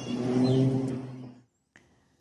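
Propeller aircraft engine droning steadily at a distance, then cutting off abruptly about a second and a half in, followed by a single brief click.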